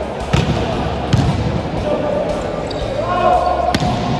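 Volleyball struck hard by hand three times: a jump serve near the start, another hit about a second in, and a third near the end. Players' voices call out between the hits.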